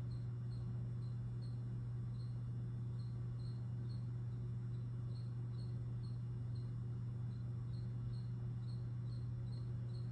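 Steady low electrical mains hum from the powered-up pinball machine, with faint high-pitched ticks repeating about three times a second.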